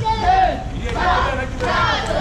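A group of children shouting and calling out together while they dance, several high-pitched voices overlapping in short cries.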